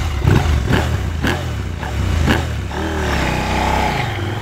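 Husqvarna Norden 901's 889 cc parallel-twin engine pulling away close by, with a few sharp clicks early in the run. The pitch rises as it accelerates about three seconds in.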